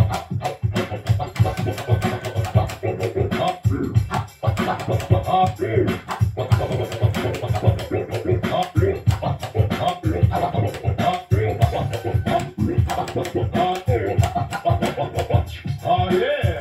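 DJ scratching on the jog wheel of a Pioneer DDJ-FLX6-GT controller over a music track with a steady beat: quick stuttering cuts as the sample's pitch sweeps up and down.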